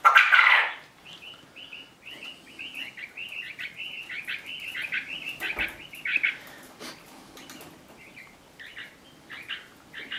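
Small birds chirping: a quick run of short high chirps through the first six seconds and a few more near the end, after a loud rustling burst in the first second.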